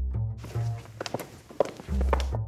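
Several people's footsteps on a hard studio floor, irregular shoe knocks starting about half a second in, over background music with a low bass line.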